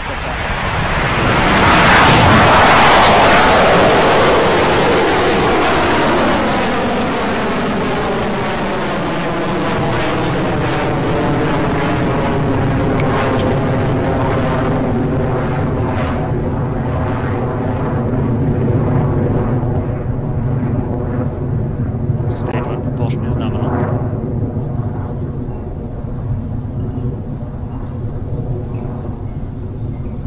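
Rocket Lab Electron's first stage, its nine Rutherford engines, at liftoff and climb-out: loud engine noise that swells in the first couple of seconds and then runs steadily as the rocket climbs away, with a falling, phasing sweep through the noise.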